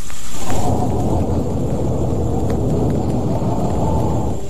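A loud, low rumble that starts suddenly and holds steady: a sound effect on a film promo's soundtrack.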